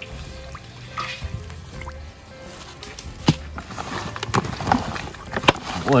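Water sloshing and splashing in a steel bowl as whole fish are washed by hand, with sharp knocks and splashes about three seconds in and again near the end. Music plays quietly underneath.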